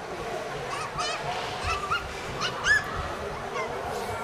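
Several short, high-pitched shouts from players echoing in an indoor ice rink over background voices, the loudest a rising call near the end.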